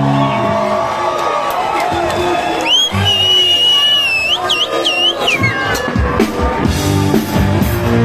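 A live band's held final chord stops, and the audience cheers, with a shrill, piercing whistle from about three seconds in lasting a couple of seconds. Near the end the band starts up again with drum hits.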